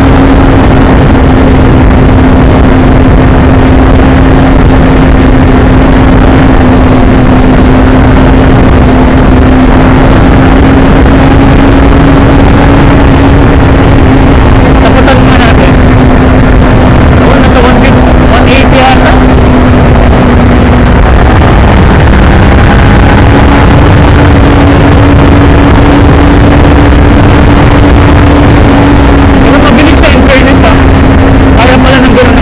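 2021 Kawasaki Ninja 400's parallel-twin engine running at a steady cruise, its note held nearly constant under heavy wind rumble on the microphone. About two-thirds of the way through, the engine note drops briefly, then settles back to the same steady pitch.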